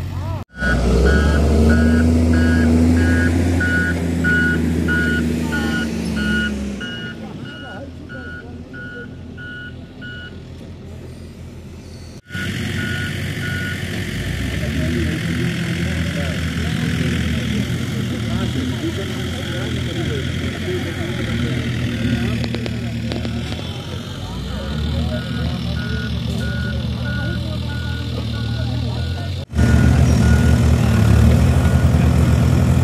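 JCB backhoe loader's diesel engine running, loudest and changing pitch in the first few seconds, with its reversing alarm beeping repeatedly about twice a second. The sound breaks off abruptly about 12 seconds in and again near the end.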